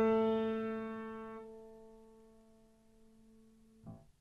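A single grand piano note ringing and slowly dying away until nearly silent after about two and a half seconds. A short, soft note sounds near the end.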